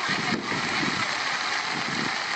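Steady rush of floodwater, heard as a dense, even hiss.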